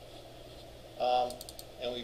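A quick run of about four computer keyboard keystrokes just past the middle, over a low steady hum of room tone.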